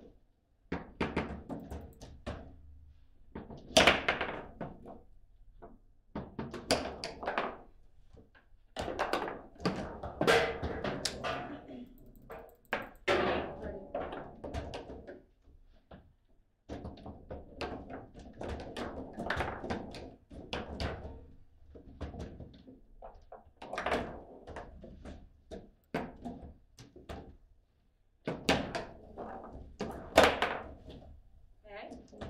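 A foosball table in hard play: the ball is struck by the plastic figures, and the rods bang and clack as they are spun and slid. It comes in rapid rallies of sharp knocks, separated by brief pauses of a second or two.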